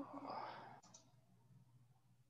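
A couple of faint computer mouse clicks a little under a second in, over otherwise near-silent low room noise.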